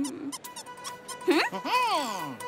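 Squeaky, wordless cartoon-character voice: a short whine that rises and then slides down in pitch, about a second and a half in, over faint background music.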